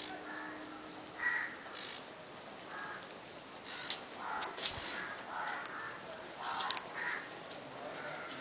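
Birds calling: a string of short, harsh calls, several in each second, with a thin high note repeating about every half second.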